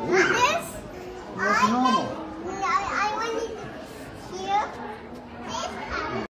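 Young children's voices chattering and calling in a play area, in several short high-pitched calls that rise and fall in pitch.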